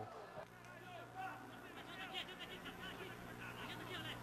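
Faint background voices and murmur over a low steady hum, with no clear words and no loud events.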